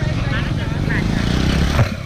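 Street traffic: a motor vehicle's low engine rumble grows louder, passing close by, under brief talking, with a single knock near the end.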